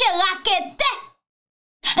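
Only speech: a woman talking animatedly in Haitian Creole for about a second, then a short gap of dead silence, and her voice starts again just at the end.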